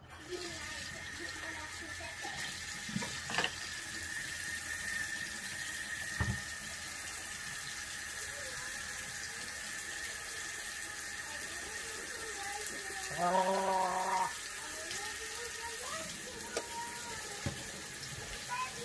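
Water running steadily from a sink tap, switched on at the start, with a few light clicks in the first seconds and a short hum-like voiced sound about thirteen seconds in.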